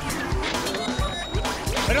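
Upbeat TV game-show transition jingle with a quick, steady drum beat, playing under the segment's animated title card.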